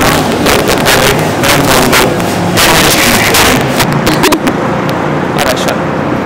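Men's voices and laughter over a loud, steady hiss of background noise.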